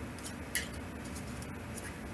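A ViceVersa Tarot deck being shuffled by hand: a handful of light, brief card clicks, the sharpest about half a second in, over a steady low room hum.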